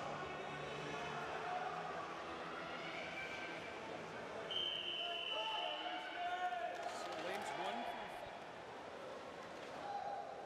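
Murmur of a crowd of spectators in an indoor pool arena with scattered voices. About four and a half seconds in, a single steady whistle blast lasts about a second: the referee's long whistle calling the swimmers onto their starting blocks.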